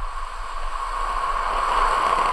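Falcon 9 first stage's nine Merlin engines firing at liftoff: a steady, loud, noisy rumble with a strong deep bass.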